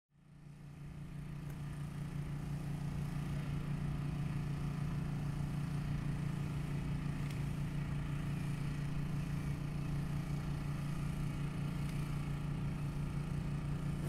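A steady low mechanical hum, like an engine running, fading in over the first two seconds and holding level. A single sharp click comes near the end, just before the sound cuts off.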